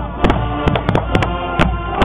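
High school marching band playing: sharp drum hits at uneven spacing, several a second, over held wind notes.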